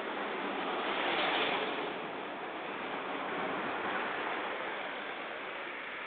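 Steady rushing outdoor street noise with no distinct events, swelling slightly about a second in.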